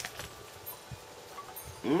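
A bite into a grilled sausage link, a short click, followed by faint chewing. Just before the end a man hums 'mmm'.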